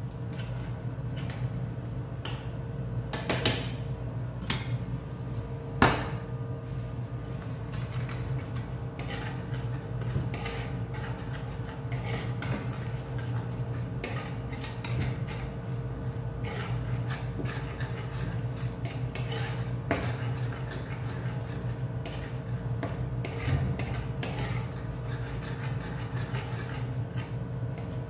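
A spoon scraping and clinking against a frying pan as thick mushroom gravy is stirred, with a few sharper knocks in the first six seconds. A steady low hum runs underneath.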